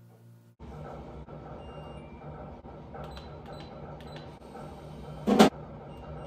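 Steady electrical hum of break-room vending machines, starting suddenly about half a second in, with scattered small clicks and one loud short clatter about five seconds in.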